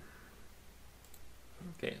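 A faint click or two from a computer mouse over a low steady hum, with a man saying "Okay" near the end.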